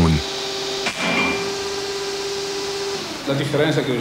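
Materials-testing machine running with a steady hum and one held tone, with a single sharp crack about a second in.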